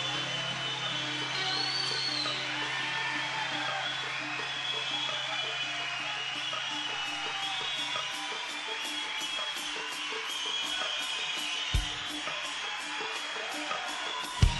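Quiet live band music from a soundboard recording: a held low note that stops about eight seconds in, softer guitar sounds above it, and a single low thump near the end.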